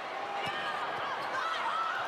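Arena crowd noise during a live volleyball rally, with short high squeaks from players' shoes on the hardwood court and a sharp ball contact about half a second in.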